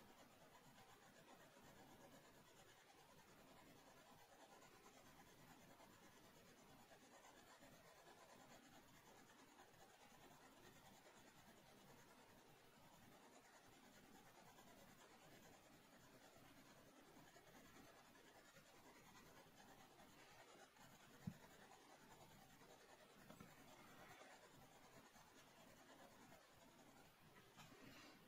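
Faint, continuous scratching of a pencil's graphite on drawing paper as a portrait is shaded with short strokes. One soft thump stands out about three quarters of the way through.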